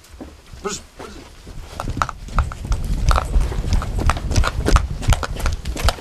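Footsteps on a hard floor and the knocks and rubbing of a hand-held camera being carried, a quick, irregular run of clicks and thuds with a low rumble that builds from about two seconds in.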